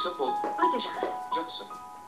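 Soft background music of sustained, chime-like notes that change pitch every half second or so, with a voice over it.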